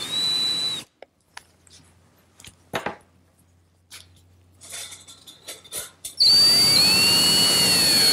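Power drill driving screws into a wooden blank: the motor's high whine stops about a second in, a few light clicks follow, and the drill runs again from about six seconds in.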